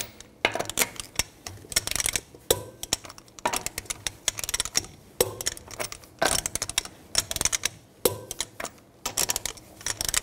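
Torque wrench clicking in short, rapid bursts, about one burst a second, as the wheel's lug nuts are tightened one after another.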